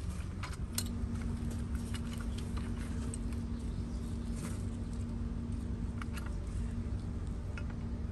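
Scattered light metallic clicks and taps as a rescue stabilization strut is backed out and extended against an overturned car. Under them runs a steady low hum, with a faint steady tone joining it about a second in.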